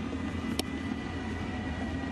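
Ballpark crowd ambience, a steady low rumble, with one sharp pop about half a second in as a pitched baseball smacks into the catcher's mitt.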